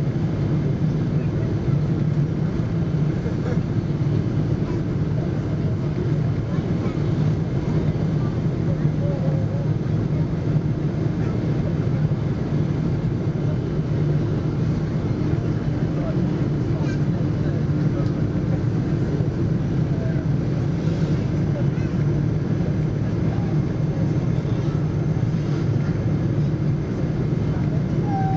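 Steady in-cabin drone of a Boeing 777 on approach, heard inside the cabin over the wing: its General Electric GE90-85B turbofan engines and the airflow make an even low rumble with no changes in level.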